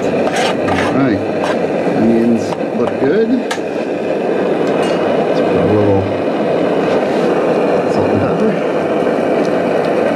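White-gas backpacking stove burning at full flame with a steady, even rushing noise under a pan of frying onions, with a few light clicks and knocks scattered through it.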